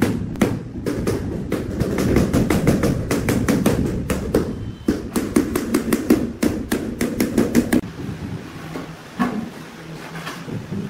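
Rubber mallet tapping a large ceramic floor tile down into its wet mortar bed to seat and level it: quick repeated blows, about four a second, that stop about eight seconds in, followed by a few scattered knocks.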